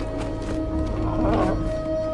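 Film music with long held notes, and a camel calling briefly about a second in.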